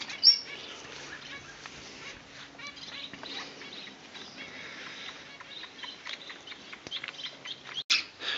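Birds chirping, with one short, loud, high whistled note just after the start and scattered fainter chirps after it.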